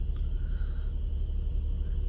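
Land Rover Discovery 4's 3.0 V6 engine idling steadily, a low rumble heard from inside the cabin.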